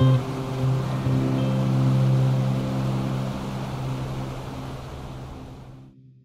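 Background music holding low sustained notes over the steady rush of a mountain stream running over rocks. Fresh notes sound at the start and about a second in, then everything fades out gradually toward the end.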